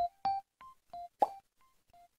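Tail end of a short logo jingle: single bell-like electric-piano notes, each dying away quickly, spaced further apart and growing fainter. About a second and a quarter in, a sharper pop sits among them.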